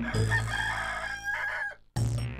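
Rooster crowing: one long crow that cuts off suddenly near the end.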